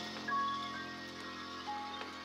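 Horror-film score playing quietly: sustained low tones under a few short, higher held notes.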